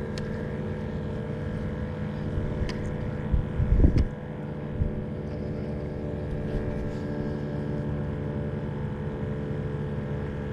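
Suzuki outboard motor idling with a steady hum. A brief low rumble on the microphone comes about three and a half seconds in, and a few faint ticks are scattered through.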